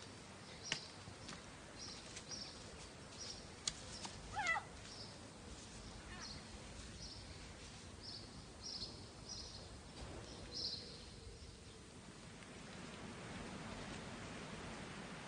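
Outdoor birdsong: short high chirps repeating irregularly, with a longer call that falls in pitch about four and a half seconds in. Two sharp clicks come early, within the first four seconds.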